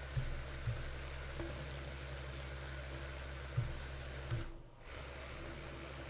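Small sensorless brushless motor with a zip tie on its shaft, running at no load at about 4,000 RPM with a steady hum. The sound drops out briefly about four and a half seconds in as the motor is driven through zero speed into reverse, then resumes. A few light clicks can be heard along the way.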